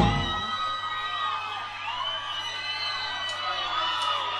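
Live cumbia band music in which the drums and bass stop right at the start, leaving sustained, gently bending melody notes over a cheering, whooping crowd.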